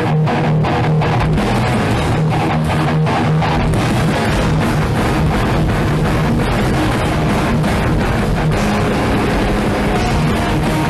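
A heavy metal band playing live: distorted electric guitars, bass guitar and a drum kit in a loud, dense instrumental passage.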